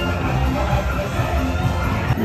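Parade music playing loudly and continuously as a Halloween parade float passes.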